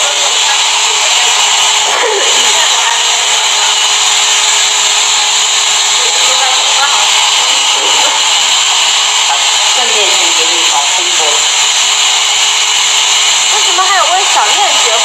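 Hand-held hair dryer blowing steadily close by, a loud even rushing noise, with faint voices underneath.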